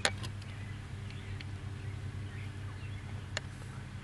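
Faint scraping of soil as a diamondback terrapin digs her nest hole with her hind feet, over a steady low hum, with one sharp click about three and a half seconds in.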